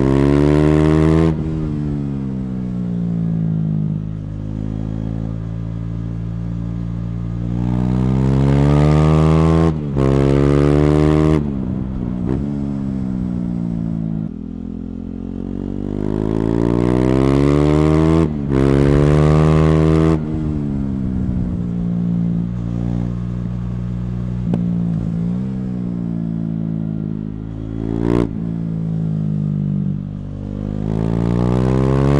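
KTM Duke 390's single-cylinder engine through a decatted Akrapovic slip-on exhaust, accelerating hard three times, the pitch climbing, breaking briefly at each upshift and climbing again, then falling away as the throttle closes. A single sharp crack near the end.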